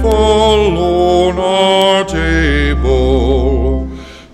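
A slow hymn sung with instrumental accompaniment: long held notes, some with vibrato, over sustained low bass notes.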